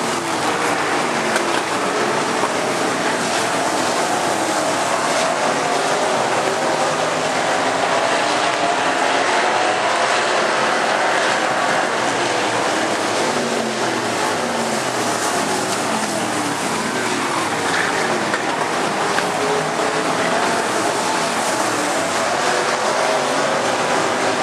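A pack of limited-class dirt-track race cars running laps on a dirt oval. Several engines overlap, their notes rising and falling as the cars pass and throttle through the turns, with no break.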